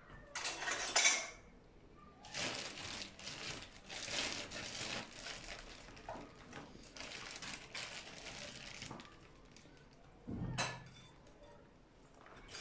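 Wire whisk stirring cold milk and flour in a metal pot, its wires scraping and clinking against the pot in an irregular run of strokes. A brief louder noise about half a second in and a single dull thump near the end.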